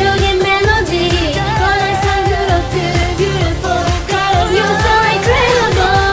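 Solo cover vocal sung over the instrumental backing track of a K-pop dance song, with a steady beat throughout.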